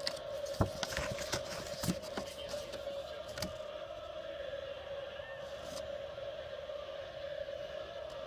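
A folded paper card being handled and opened: a few light clicks and rustles in the first few seconds, then only a steady background hum.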